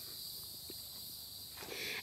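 Steady, high-pitched chorus of insects in the background, with a faint tick a little under a second in.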